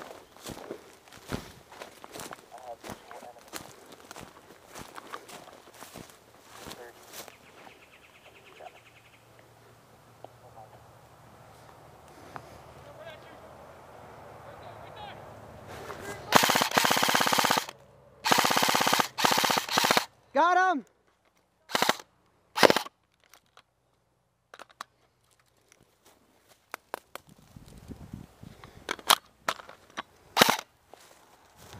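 Airsoft rifle firing in rapid full-auto bursts, a long string of fast shots about two-thirds of the way in followed by shorter bursts and a few single shots. Before the firing, footsteps rustle through dry leaves and grass.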